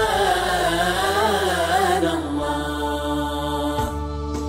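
A vocal chant in nasheed style. The line wavers and is ornamented for about two seconds, then settles into steady held notes.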